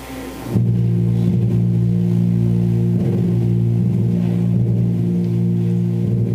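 Church organ entering suddenly about half a second in with a loud, sustained low chord, held steadily.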